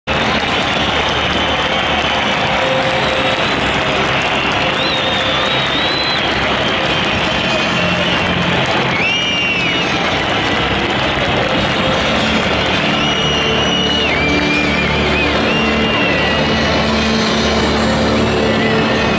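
Loud, steady football-stadium crowd noise with music playing underneath, and a few high whistles now and then.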